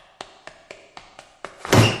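A quick run of light taps, about four a second, then a loud thud against a toilet-stall door near the end, met by a short startled 'ah'.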